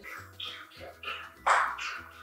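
A dachshund lapping water, a few wet slurping laps with the loudest about one and a half seconds in, over light background music.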